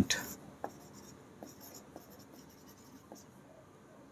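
Marker pen writing on a whiteboard: faint strokes of the felt tip across the board, with a few light taps as the pen touches down.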